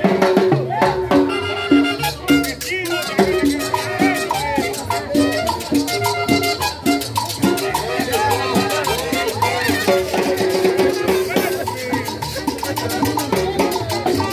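A live street band playing upbeat Latin dance music, with melody over a steady, even drum beat.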